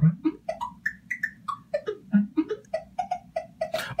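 A mouth-made hi-hat sample in the ER-301 sound computer's sample player, retriggered about five times a second. Its pitch swings low and high as the tune setting is turned, then holds steady for the last second or so.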